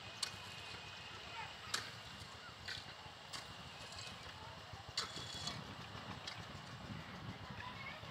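Outdoor ambience over open grazing ground: a steady low rumble with about six short, sharp chirps or clicks scattered through it.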